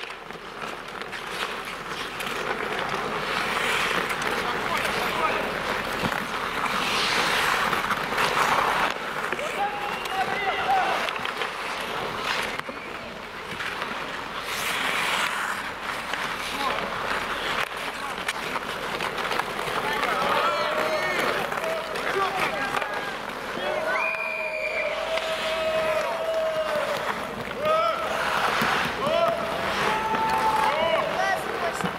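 Ice hockey play on an outdoor rink: a steady noisy hiss with several scraping surges from skates on the ice, and players shouting short calls, most of them in the second half.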